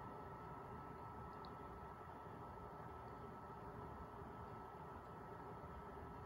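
Near silence: faint, steady room tone with a light hiss.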